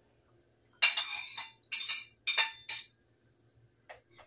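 A spoon scraping sliced celery and sausage off a plate into a cooking pot in four quick, sharp scrapes, then one light knock near the end.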